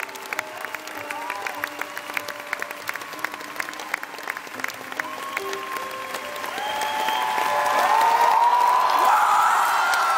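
Concert crowd clapping and cheering over a few held keyboard notes. The cheering swells much louder from about two thirds of the way through.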